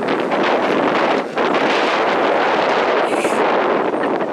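Wind blowing across the camera microphone: a loud, steady rushing noise that dips briefly a little over a second in.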